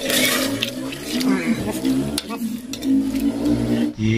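A metal ladle stirring thick tripe curry in a metal pot, with repeated clinks and scrapes against the pot. A voice talks under it.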